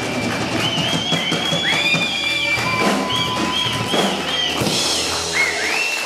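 A live rock song ending, its last notes dying away under audience applause and a run of high, rising-and-falling whistles from the crowd.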